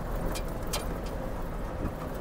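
A truck's engine and road noise heard from inside the cab while driving along, a steady low rumble with a few faint ticks.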